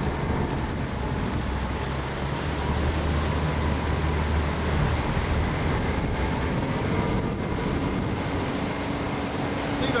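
Boat motor running steadily as the boat moves along over floodwater, with water and wind noise over it.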